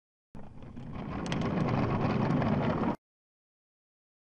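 Intro sound effect: a noisy, rumbling swell that grows louder for about two and a half seconds and then cuts off suddenly.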